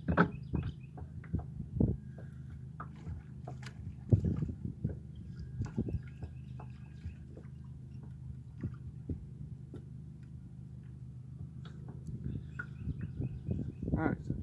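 Irregular knocks and bumps of handling in a kayak while a large hooked fish is worked alongside, over a steady low hum; the knocks are loudest near the start and about four seconds in.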